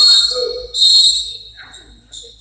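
Referee's whistle blown in two long, shrill blasts and a short third one near the end, stopping play in a basketball game.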